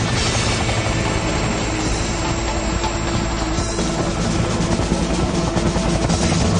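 Helicopter rotor and engine running steadily as the helicopter lifts off, with background music playing over it.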